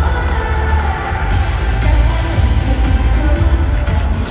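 Live pop music played loud over an arena concert's sound system, with heavy bass, heard from the audience.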